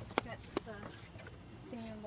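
Two sharp slaps of flip-flop footsteps on a wooden deck, about a third of a second apart, with quiet voices after them.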